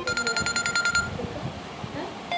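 Smartphone ringtone for an incoming call: a rapidly pulsing high electronic beep lasting about a second.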